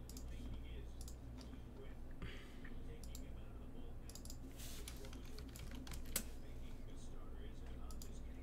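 Computer keyboard typing, irregular keystrokes and clicks, over a steady low hum.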